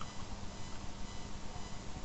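Room tone: a steady hiss with a faint low hum and no distinct sounds.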